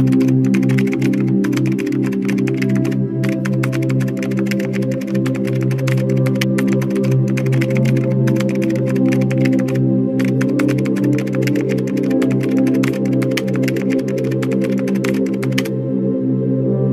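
Slow ambient music with a sustained synthesizer pad, overlaid by a rapid keyboard-typing sound effect: dense clicks in runs with a few short pauses, stopping just before the end.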